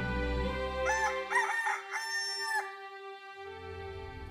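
A rooster crowing once, starting about a second in and ending on a long held note, over soft background music.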